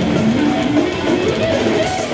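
Death metal band playing live: heavily distorted electric guitars over drums, recorded from within the crowd.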